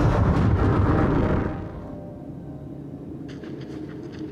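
Deep rumble on an animated episode's soundtrack, loud for about a second and a half, then dropping away to a quieter low drone.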